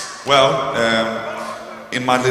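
A man's voice over a concert PA, holding one long drawn-out vowel for about a second and a half.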